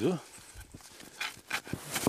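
Thick wool blanket being rolled up along its edge on snow: a few faint, short rustles.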